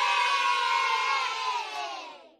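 Crowd cheering: one sustained cheer of many voices together that fades out near the end, cut in between edits as a sound effect.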